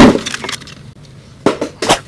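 Hard plastic parts of a children's ride-on electric car knocking and clattering as they are handled: one loud knock at the start that rings off, then two sharp clicks near the end.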